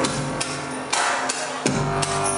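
Live electronic pop band playing: sustained synth tones with sharp percussive hits a few times a second.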